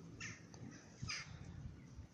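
Two faint, short bird calls about a second apart, over low outdoor background noise.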